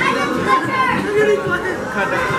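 Many people talking at once: the chatter of a crowded room of guests, with overlapping voices and no single speaker standing out.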